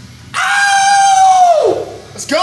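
A man's long, loud, high-pitched yell of triumph right after finishing a heavy set of trap bar deadlifts. It starts a moment in, holds steady for over a second, then falls away in pitch.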